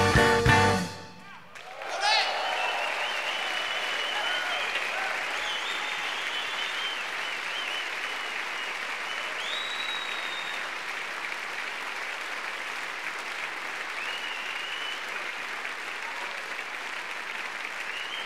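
The band's closing chord cuts off about a second in, then a large concert audience applauds steadily, with a few whoops and whistles over the clapping.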